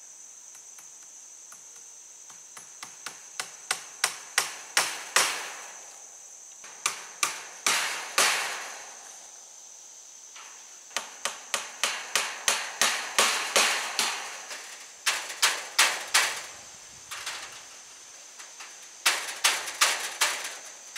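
Hammer blows on a wooden pole frame fixing wire mesh, in several runs of quick taps that grow harder toward the end of each run. A steady high-pitched insect drone runs underneath.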